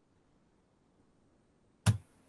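Near silence, then a single short pop near the end.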